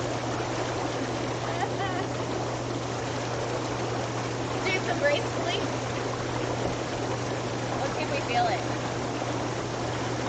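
Inflatable hot tub's bubble jets running: water churning and fizzing steadily over the constant low hum of the air-blower motor.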